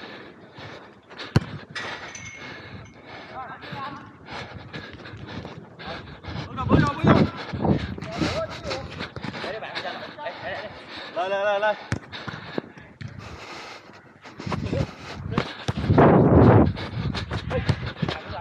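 Footballers calling out to each other during play on a small-sided pitch, with two sharp single thuds of a ball being kicked, about a second and a half in and again about twelve seconds in. The voices grow louder and busier near the end.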